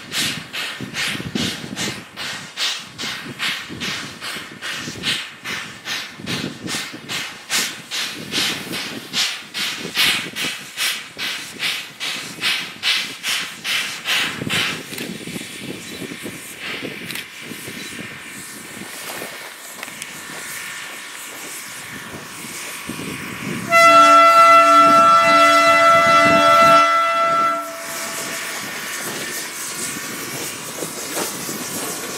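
Steam locomotive working a loaded coal train: rapid, regular exhaust chuffs for the first half, giving way to a steadier rolling noise with hiss. About three-quarters in, a long chime whistle blast of several notes at once, the loudest sound, lasts about four seconds.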